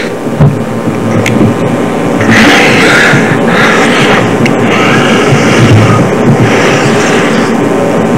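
Paper rustling as a congregation turns through Bible pages, coming in several waves. Underneath is the steady hum and hiss of a poor-quality recording.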